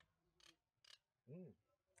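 Near silence by still water, broken by two faint short clicks about half a second apart and, a little later, a brief low hum-like voiced sound that rises and falls in pitch.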